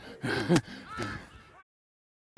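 Short breathy gasps and laughing exclamations from people at play, the loudest about half a second in. The sound cuts off abruptly to dead silence about one and a half seconds in.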